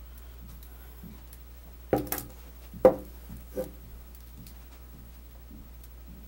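A few short, sharp knocks on a table, about two seconds in and again near three and three and a half seconds, the one near three seconds the loudest, over a steady low hum.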